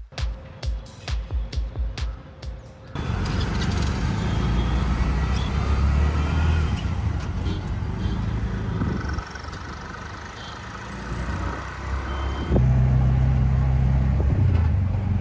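Electronic dance music with a steady beat for about the first three seconds. It then gives way to an auto-rickshaw's engine running as the rickshaw rides through busy street traffic, heard from inside the open cab. Near the end a louder, steadier low hum takes over.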